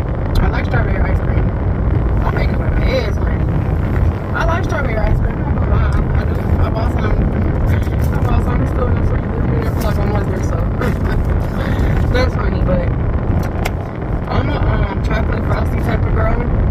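Steady low rumble of a car's cabin with a woman talking over it.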